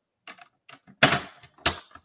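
Paper trimmer being handled: a few light taps, then two sharper clacks, one about a second in and one near the end, as the sliding blade carriage is moved into place on its rail.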